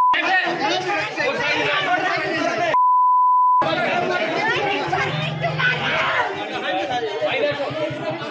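A crowd of men talking over one another, cut by a steady high censor bleep that blanks the voices: one ends right at the start, and another lasts just under a second about three seconds in.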